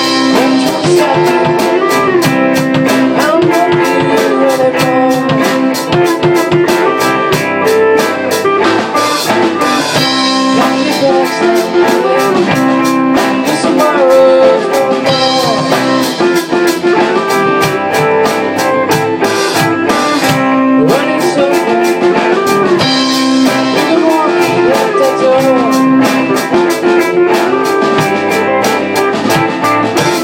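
A rock band playing a song: an acoustic guitar strummed over a steady drum beat, with a man singing in stretches.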